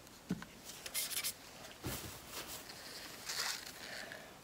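Faint handling noises from small paint cups being moved about by gloved hands: a couple of soft knocks as cups are picked up and set down, and short rustles.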